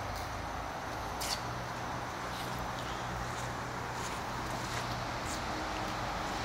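Steady hiss of rain falling, with a faint low hum underneath and a light tap about a second in.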